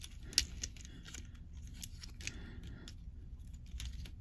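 Small plastic clicks and rubbing from an S.H. Figuarts action figure's joints being worked by hand, with the loudest click about half a second in and a brief scrape around the middle.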